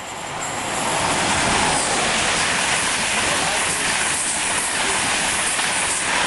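InterCity 125 high-speed train passing close by at speed: a loud rush of air and wheels on rail that builds over the first second as it arrives, then holds steady as the carriages go past.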